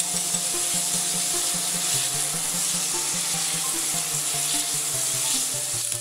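Beef strips sizzling with a steady hiss in an oiled pan as they are stirred with a silicone spatula, under quiet background music.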